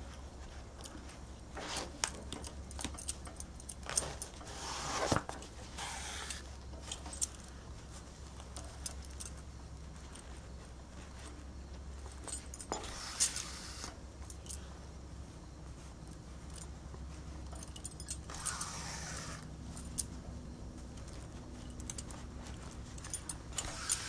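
Bangles on the wrists clinking and jingling lightly with scattered small clicks while hand-stitching, with a few longer rustles of cloth and thread being pulled through.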